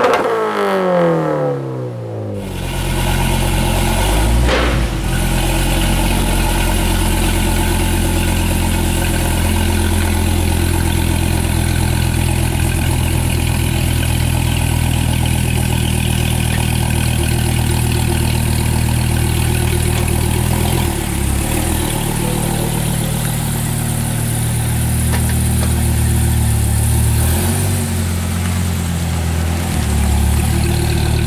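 A short intro sting of rising and falling sweeping tones gives way, about two seconds in, to a 2008 Dodge Viper SRT-10's V10 idling steadily, with a brief burst a couple of seconds after it takes over.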